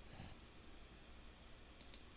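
Near silence: room tone with a few faint computer-keyboard clicks.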